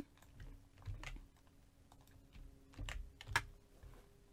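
A handful of faint, separate clicks from working a computer keyboard and mouse, the loudest near the end, over a faint steady hum.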